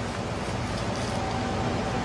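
Steady background hiss with a faint low hum, no other sound; the noise floor of the recording between lines of dialogue.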